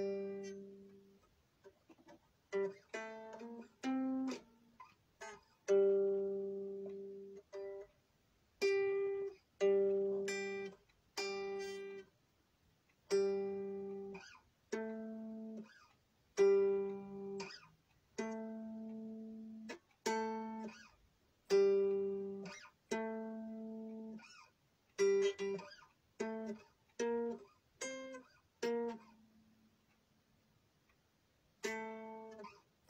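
Unaccompanied guitar played slowly: single plucked notes and chords, each left to ring and die away before the next, about one a second with short gaps between.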